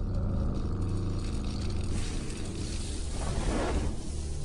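Cartoon sound effect of a deep, steady rumble as a character strains and powers up, with a rushing swell about three seconds in that leads into explosions.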